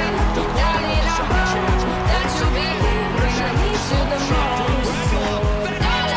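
Background music: a song with a fast, steady deep drum beat that comes in right at the start, and melodic lines over it.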